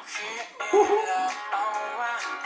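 A male vocalist singing a pop song over backing music, his voice sliding between notes.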